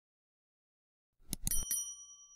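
Silence, then about a second and a quarter in, three quick clicks followed by a bright, high bell ding that rings briefly and fades. It is the sound effect for a subscribe-button click and notification-bell animation.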